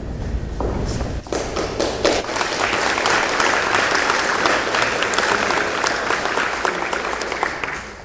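Audience applauding: a few scattered claps at first, swelling into full applause about a second in, which stops abruptly near the end.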